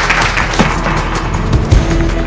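Crowd applauding, a dense patter of many hands clapping, over background music with a steady low beat.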